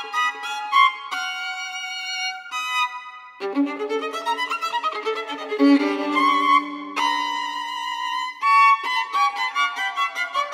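Solo violin playing contemporary music: quick high notes, then a few held high notes, and about three and a half seconds in a drop to a lower, busier passage with several notes sounding at once.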